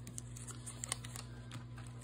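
Faint, scattered small clicks and taps of small plastic toy pieces being handled, over a low steady hum.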